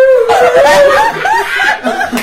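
A voice sings one held, wavering note, mimicking an obnoxious song. It then breaks into a quick run of laughter.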